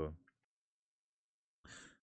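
The end of a spoken word, then dead silence, then a short, soft intake of breath near the end.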